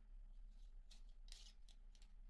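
Faint snips of small scissors and rustling as packaging is cut open and handled. A few short, crisp sounds come in the second half.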